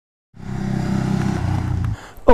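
Ducati Hypermotard 939's L-twin engine running at low revs. It starts suddenly about a third of a second in, with a fast, even pulsing.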